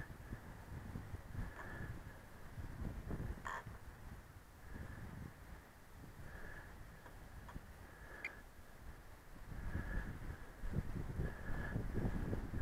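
Gusty wind rumbling on the microphone, with a bird calling faintly in short repeated notes every second or two.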